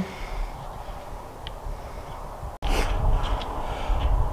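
Low rumble of wind and handling noise on the camera microphone. It breaks off sharply about two and a half seconds in, and comes back louder.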